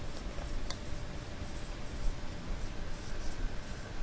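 Marker writing on a whiteboard: short, faint, intermittent squeaks and scratches of the felt tip on the board.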